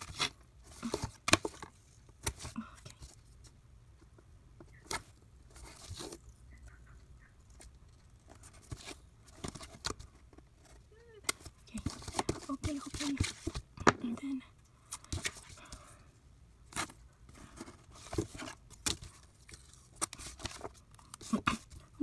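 Washi tape being pulled off the roll, torn and pressed down onto paper planner pages, with paper rustling and scattered sharp taps and clicks of tape and ruler handling on the desk.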